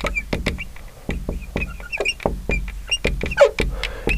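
Marker writing on a glass lightboard: a quick run of small taps and short squeaks from the tip as each letter is drawn.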